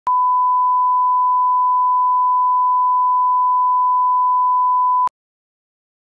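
Broadcast line-up reference tone, a steady 1 kHz sine tone, played with the SMPTE colour bars at the head of a commercial master tape. One unchanging pitch lasts about five seconds, then cuts off suddenly.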